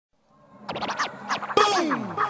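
Turntable scratching opening a hip-hop style music track: a run of quick back-and-forth pitch sweeps starting about half a second in, then a louder hit about a second and a half in.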